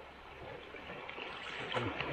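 Steady rush of river water running over a shallow, rocky stretch of small rapids, heard from a canoe.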